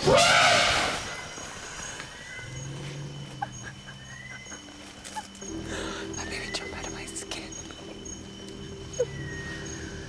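Wild elephant trumpeting once, loud and about a second long, at the start; jungle birds call at intervals afterwards.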